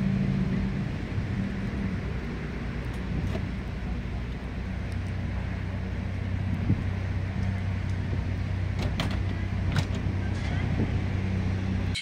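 A steady low mechanical hum, with a few faint knocks and clicks near the end.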